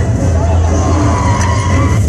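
Trailer soundtrack played over a hall's sound system: music under a car sound effect, with a tyre squeal about a second in.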